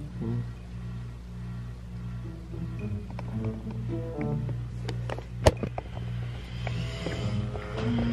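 Background music with steady low held notes and short plucked-sounding notes, and a single sharp click about five and a half seconds in.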